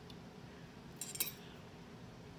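A short burst of metallic clinks about a second in from a metal tablespoon being handled, over quiet room tone.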